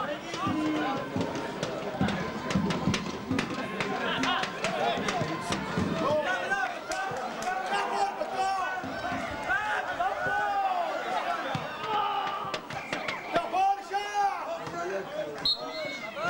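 Overlapping calls and chatter of people at an amateur football match, several voices at once and none clear enough to follow, with scattered sharp clicks and knocks.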